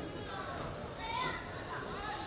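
Faint, distant voices shouting across a football pitch, with one louder call about a second in.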